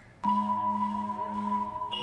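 The instrumental backing track of a rap song starts about a quarter of a second in: steady sustained tones held over a low note.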